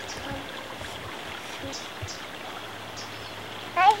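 A small creek trickling and rushing steadily over rocks, with a few faint bird chirps above it. A child's voice comes in just at the end.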